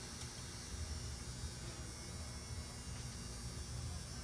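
Steady low hum with a faint hiss, room tone with no distinct event.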